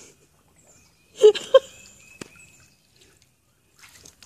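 A dog splashing and lapping in a shallow puddle of water lying on a mesh pool cover, faint. About a second in, two short bursts of a woman's laughter are the loudest sound.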